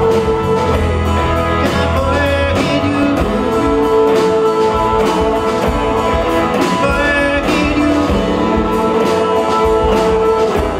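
A live rock band playing a song with electric guitars, electric bass and drums, keeping a steady beat and sustained chords.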